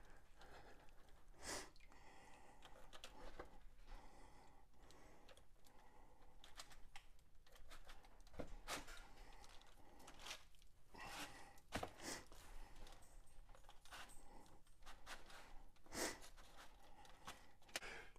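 Faint, scattered clicks and rustles of hands pushing wooden skewers through raw pork ribs wrapped around a pineapple, set on a foil-lined tray; between them, near silence.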